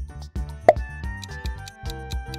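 Upbeat background music with a steady beat, and a single short, loud cartoon-style pop sound effect less than a second in, marking the switch to the next question.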